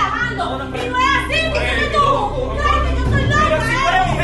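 Several raised voices speaking and shouting over each other, over background music with a steady deep bass.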